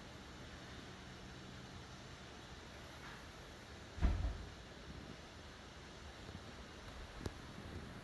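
Quiet steady background hiss, with one dull thump about four seconds in and a faint click near the end.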